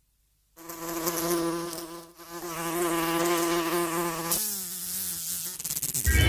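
A steady buzz like a flying insect's wings, starting about half a second in, wavering slightly, then shifting in pitch and fading near the end.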